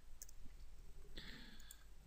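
Faint clicks of a computer keyboard and mouse: a key is typed and a button clicked. A soft breathy hiss lasts under a second, starting about halfway through.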